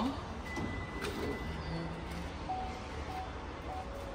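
Parking-garage background: a steady low hum, with faint short tones repeating every half second or so in the second half.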